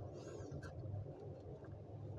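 Quiet background: a faint steady low hum, with a faint high chirp near the start.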